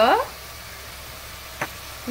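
Beetroot, onion and tomato masala sizzling steadily in a pressure cooker on the stove, with one short knock about a second and a half in.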